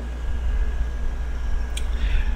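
Steady low hum of background room or equipment noise, with a single faint click near the end.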